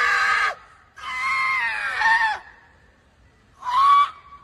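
Screaming: a cry that cuts off about half a second in, a second drawn-out scream lasting about a second and a half with its pitch dropping at the end, and a short cry starting near the end.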